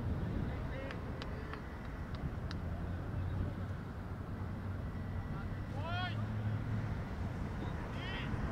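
Wind rumbling on the microphone, with faint distant voices of players. About six seconds in, one voice calls out in a single drawn-out shout.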